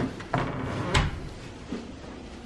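A few short clunks and clicks in the first second, as of a door or cupboard being handled, then low room noise.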